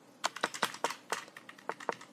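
A quick, uneven run of about ten light clicks from a computer keyboard being typed on.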